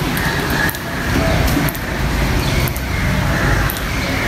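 Low, steady rumble of a car engine running in a covered concrete car park, with a soft regular beat about once a second.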